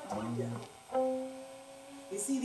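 An electronic keyboard sounds a single note about a second in, held steadily for about a second as it slowly fades. A brief voice comes just before it.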